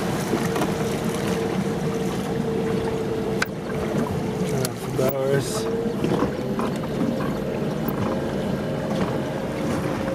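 Electric speedboat under way: water rushing along the hull and wind, with a steady whine from the electric drive. About halfway through, the whine wavers and shifts slightly in pitch as the throttle is eased back from about 2000 rpm to a slower canal speed.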